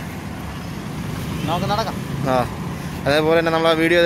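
Steady hum of road traffic from cars on the adjacent road, with a person talking over it in the second half.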